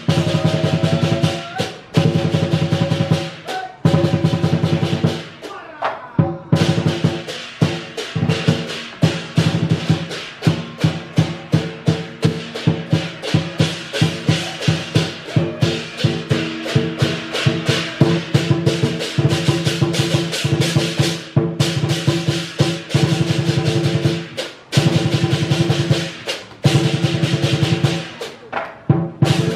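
Chinese lion dance percussion playing loud and fast: a driving drum beat with clashing cymbals and gong ringing over it, broken by a few short pauses in the first six seconds.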